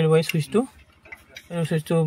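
A man speaking, with a short pause about a second in that holds faint metallic clicks of a spanner working a bolt on a diesel engine.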